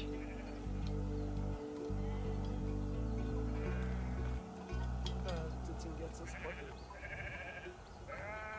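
Sheep in a flock bleating, a few short wavering calls, over a low steady hum that shifts pitch a few times and fades toward the end.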